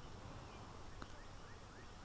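Quiet outdoor background with a few faint, short chirps from birds, about a second in.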